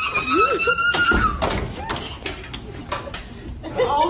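Cartoon sound effects: a held, slightly wavering high tone for about a second, then a scatter of knocks and thuds as the chair tips over.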